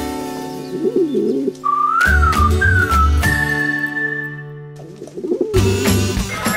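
Pigeons cooing in a cartoon soundtrack, a low warbling about a second in and again near the end, over music with a high wavering note and then a long held one in the middle.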